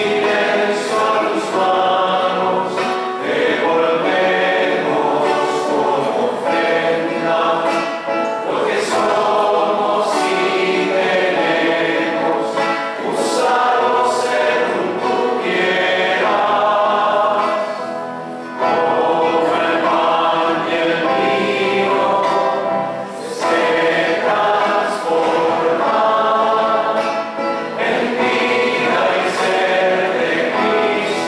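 Choir singing a hymn in phrases with brief pauses between them, the offertory hymn sung while the gifts are prepared at the altar.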